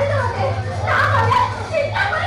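High-pitched voices speaking or calling out over a steady low hum.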